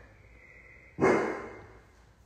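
A single dog bark about a second in, sharp at the start and fading away quickly.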